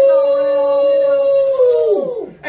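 A loud, long howl held on one pitch for about two seconds, sliding up as it starts and dropping away at the end.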